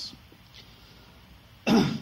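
A man coughs once, sharply and briefly, near the end, after about a second and a half of quiet room tone.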